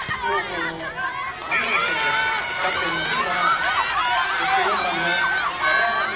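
Many high-pitched voices shouting and calling over one another, getting louder and busier about a second and a half in.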